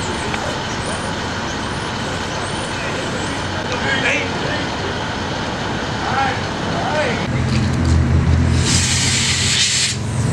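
Street traffic noise, then a motor vehicle's engine running low and steady from about seven seconds in. Over the last second or so there is a loud, steady high hiss that stops suddenly.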